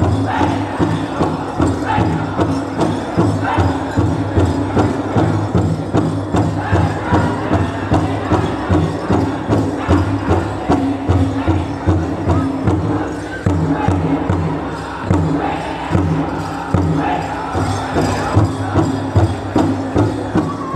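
A powwow drum group sings a grass dance song in unison, with a steady beat on a large shared drum.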